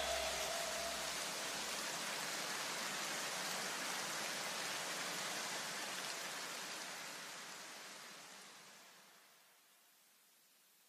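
A hiss of noise left after the electronic background music cuts off, with a low bass tail dying away in the first two seconds; the hiss slowly fades to silence about nine seconds in.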